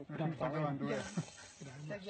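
Speech only: a voice talking, with no other sound standing out.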